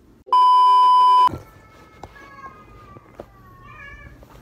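A loud, steady high-pitched beep about a second long, a censor bleep laid over the sound track, followed by faint slowly falling tones and a few light clicks.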